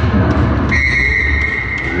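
Referee's whistle blowing one long steady blast, starting about two-thirds of a second in, over music playing in the hall.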